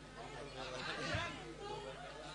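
Faint, indistinct chatter of several voices, with no one voice standing out.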